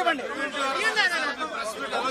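Crowd chatter: many men's voices talking over one another at once.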